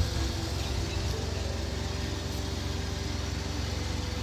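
A car engine idling steadily, a low even hum with a fine rapid pulse.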